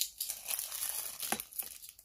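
Thin clear plastic bag crinkling and rustling irregularly as it is handled, with small clicks and one sharper tick partway through.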